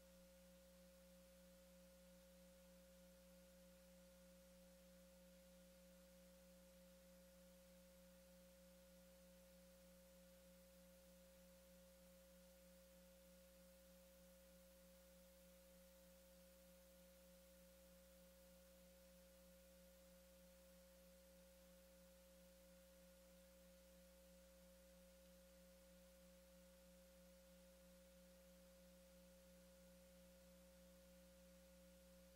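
Near silence: only a faint, steady hum with a thin unchanging tone, likely electrical noise on the line.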